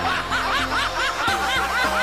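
Rapid snickering laughter: a regular run of short high 'hee'-like laughs, about four a second, over a steady music bed.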